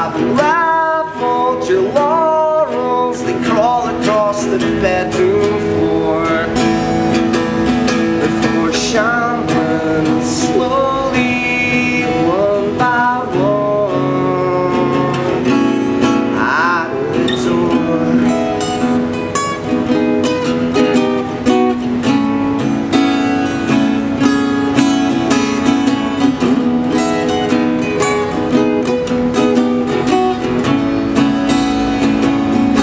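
Acoustic guitar strummed and picked, with a man's voice singing over it for roughly the first half. After that the guitar plays on alone, the strumming growing denser.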